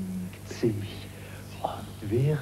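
A man's voice in short, drawn-out utterances separated by pauses, over a steady low hum.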